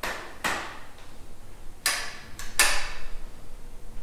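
A few sharp knocks and clanks from hand tools and handlebar parts while new handlebars are fitted to a Honda CRF110 pit bike: about five separate hits, the loudest pair a little after two seconds.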